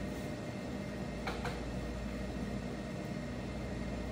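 Room tone: a steady low hum of room machinery, with one faint brief click about a second and a quarter in.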